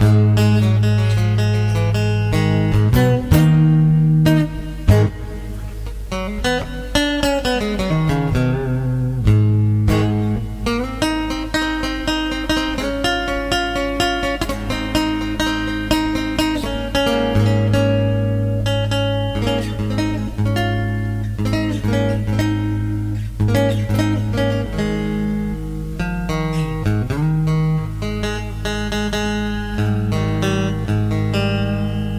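Three-string tin guitar with a single-coil pickup, played electrically through a computer amp simulation with a slight touch of overdrive: picked notes and chords over sustained low notes, with a couple of notes sliding up and down in pitch.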